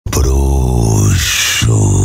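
Loud, very deep, drawn-out groan-like voice effect from a DJ set's intro. It is held for about a second, broken by a short hissing whoosh, then resumes.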